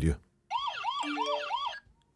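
Panic-alarm siren of a Topvico smart Wi-Fi alarm, set off by its panic button: a fast wail of rising sweeps, about three a second, that cuts off suddenly near the end.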